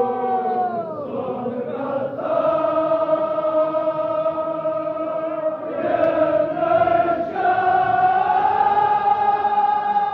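A congregation of men chanting a Muharram mourning lament in unison, holding long notes for several seconds at a time. The voices drop in pitch about a second in and break briefly near six seconds before rising into another long held note.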